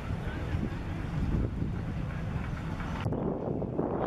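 Wind buffeting the camera microphone outdoors, a steady low rumble, with faint voices in the background. The sound changes abruptly about three seconds in.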